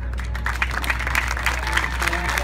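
Audience clapping, starting about half a second in and growing to a dense patter of claps.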